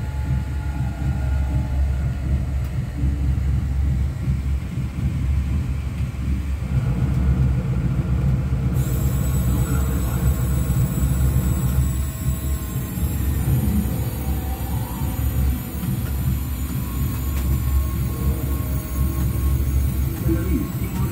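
A steady low rumble. A thin high whine joins it about nine seconds in.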